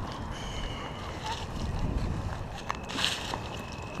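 Low rumbling wind and handling noise on a moving camera's microphone, with a few light knocks and a brief rustle about three seconds in.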